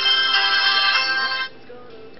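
Music playing through the small built-in speaker of a WG9 dual-SIM phone from its media player. It cuts off suddenly about one and a half seconds in, when playback is paused.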